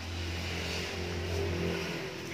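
Steady low engine hum of a motor vehicle running nearby.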